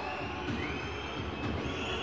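Crowd noise in a basketball arena, with long, high whistles from the stands that hold steady and slide upward about half a second in and again near the end.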